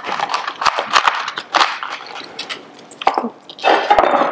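Chef's knife cutting through fresh celery ribs on a wooden cutting board: a quick run of crisp crunches, thickest in the first two seconds, with another crunch about three seconds in.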